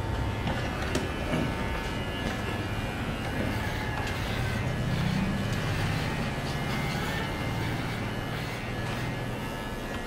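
Corded electric pet clipper running with a steady low buzz as its blades shave a Shih Tzu's coat.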